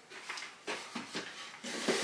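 Cardboard puzzle boxes being handled on a shelf: a few light knocks and scrapes as they are touched and shifted, the last ones near the end a little louder.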